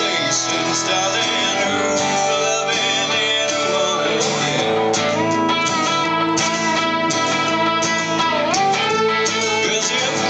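Electric guitar lead over a strummed acoustic guitar in a two-guitar instrumental passage, the lead notes bending in pitch.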